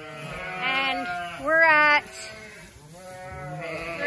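Sheep bleating twice in the barn pens: a short call about three-quarters of a second in, then a louder, quavering bleat around a second and a half in.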